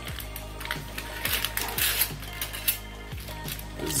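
A clear plastic bag crinkling, with several small clicks as loose screws are handled, over steady background music.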